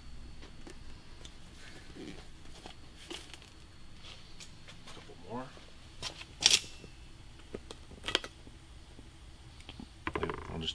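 Scattered light knocks and taps as play balls are handled and set down on a vacuum former's table, the sharpest knock about six and a half seconds in, over quiet room noise.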